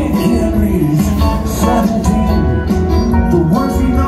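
Live rock band playing loudly, with guitar, keyboards, drums and bass in full swing, as recorded from the audience on a phone.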